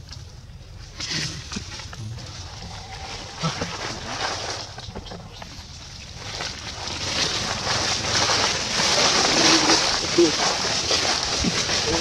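Dry fallen leaves crunching and rustling underfoot in thick leaf litter. The crackling grows louder and denser from about halfway through, and a voice is briefly heard near the end.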